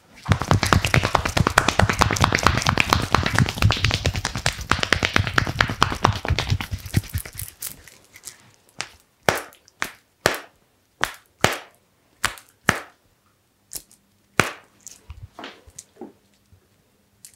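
Hands slapping rapidly on a person's arm in a fast chopping massage for about seven seconds. After that come single sharp taps and smacks at irregular intervals as the hand and wrist are worked.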